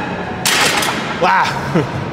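Plate-loaded chest press lever arms set down onto their rests at the end of a set, giving a single short metal clank about half a second in.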